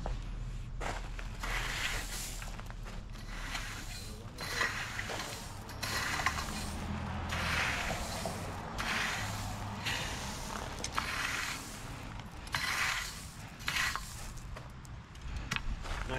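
A steel rake dragged through loose chipstone bedding gravel in repeated scraping strokes, about one a second, over a low steady hum.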